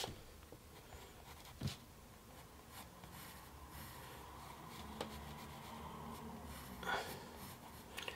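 Faint graphite pencil drawing on paper: a few short scratchy strokes with pauses between them, the clearest one near the end.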